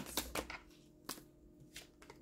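Tarot cards being handled: a few quick card flicks in the first half second, then a few separate soft snaps as cards are drawn from the deck and laid down.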